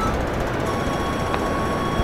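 Steady hiss and hum of a live microphone and sound system, with a few faint held tones in the background.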